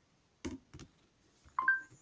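A few faint clicks, then near the end a short electronic beep of two steady tones sounding together from an Alexa smart speaker as it responds to a voice command.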